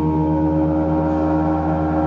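Large gongs played in a continuous, layered wash: many overlapping ringing tones with a low, pulsing beat underneath, and a higher tone swelling in under a second in.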